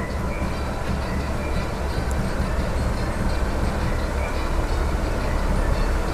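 A steady low rumble with an even hiss above it, growing slightly louder.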